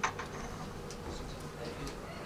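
Quiet room with a faint steady hum. A sharp click comes at the very start, followed by a few light clicks and rustles.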